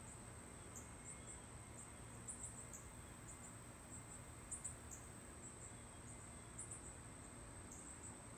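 Faint insect chirping: short, high-pitched chirps in twos and threes every second or so over a steady high hum.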